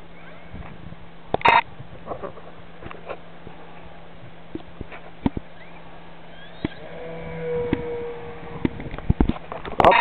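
Faint electric-motor and propeller whine of a Turbo Timber radio-control plane on its takeoff run, heard as a thin steady tone that comes up about seven seconds in and fades a second and a half later. Scattered light clicks and taps throughout.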